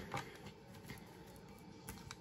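Faint room hiss with a few soft clicks from tarot cards being handled.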